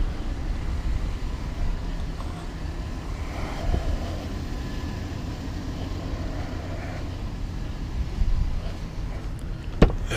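Low steady outdoor rumble with no clear events, then a single sharp click near the end as the van's driver door is unlatched.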